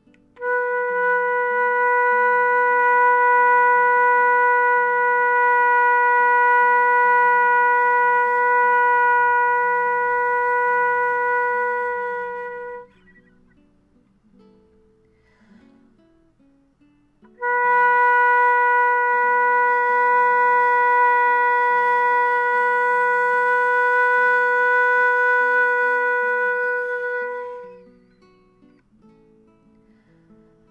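Concert flute playing long tones on middle-register B: one steady note of about twelve seconds that fades at the end, then after a pause of about four seconds a second held B at the same pitch, about ten seconds long. It is a long-tone exercise for building tone, and the second note has a more open, ringing sound. Quiet acoustic guitar music plays faintly underneath.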